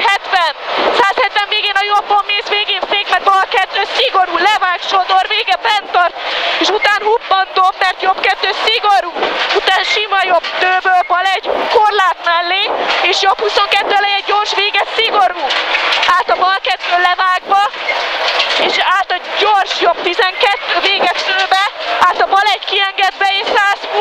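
Rally car engine driven hard inside the cabin, its revs rising and falling with gear changes and braking, with frequent sharp cracks and knocks.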